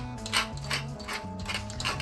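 Pepper mill being twisted by hand, its grinder giving a run of dry clicks, about three a second, as it grinds pepper.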